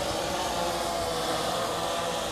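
Blade 350 QX quadcopter's four electric motors and propellers whirring steadily as it hovers overhead, under a steady hiss of wind on the microphone.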